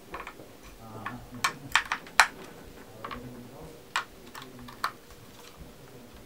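Sharp plastic clicks and taps from handling a Samsung TV remote in the hands, about ten of them, irregularly spaced, the loudest about two seconds in.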